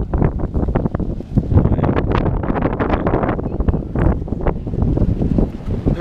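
Wind buffeting the camera's microphone: a loud, uneven rumble with crackles.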